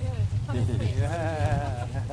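A drawn-out voice-like call whose pitch wobbles up and down, from about a second in until near the end, with shorter calls around it. Under it runs a steady low hum from the boat's engine.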